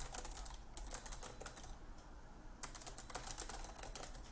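Typing on a computer keyboard: a run of quick keystrokes, a pause of about a second near the middle, then more keystrokes.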